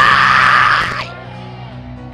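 A loud shouted cry that cuts off about a second in, leaving soft backing music with sustained chords playing on.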